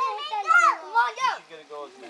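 Children's voices calling out, several short high-pitched calls that rise and fall in pitch.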